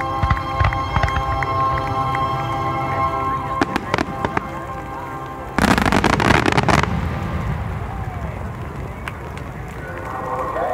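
Aerial fireworks going off: a few booms in the first second and again around four seconds in, then a dense rapid run of pops lasting about a second, about five and a half seconds in. Music plays steadily underneath.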